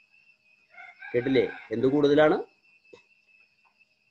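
A rooster crowing once, a call of about one and a half seconds in two parts, starting about a second in.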